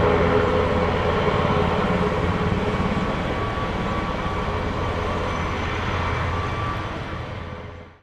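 NH Industries NH90 NFH helicopter's twin turboshaft engines and main rotor running on the ground: a steady whine over a fast, even rotor beat, fading out near the end.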